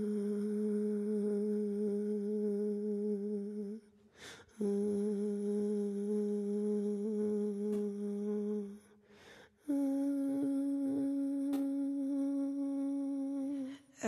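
A voice humming three long, steady held notes with short breaks between them; the first two are on the same low pitch and the third, starting a little before the ten-second mark, is higher. It is part of the soundtrack music.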